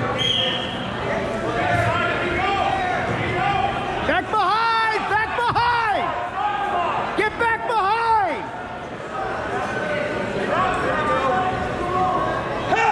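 Indoor gym crowd chatter with people shouting loudly in short repeated calls, a run of about four calls around four seconds in and about three more around seven seconds in, echoing in the hall.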